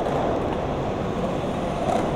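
Skateboard wheels rolling over a concrete skatepark bowl: a steady rolling rumble.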